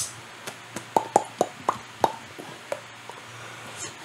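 A run of short, soft, irregular clicks: one sharper click at the start, then about eight more spread over the next three seconds, over a faint low hum.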